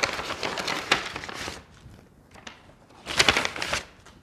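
Brown paper wage packet rustling and crinkling as it is handled and its notes are taken out, in two bursts: one in the first second and a half, and a shorter one about three seconds in.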